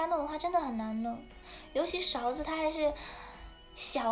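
A young woman talking in Mandarin in two short phrases, over faint background music.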